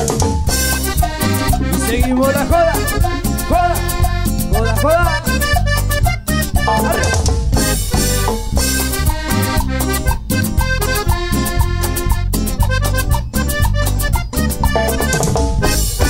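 A live cumbia band playing an instrumental passage: a steady drum-kit and percussion beat under a sliding lead melody line.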